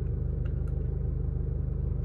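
Car engine idling, heard from inside the cabin as a steady low drone, with a couple of faint light ticks about half a second in.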